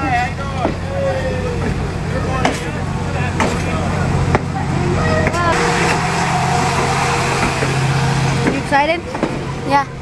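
Passenger train cars rolling slowly past close by, with a steady low hum that grows louder through the middle and then eases. People's voices are heard over it.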